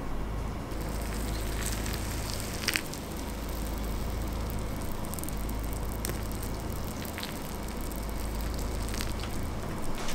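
Hot water poured from a glass kettle onto dry instant barley porridge mix in a wooden bowl: a steady hiss and crackle as the grains soak up the water, with a few sharp clicks.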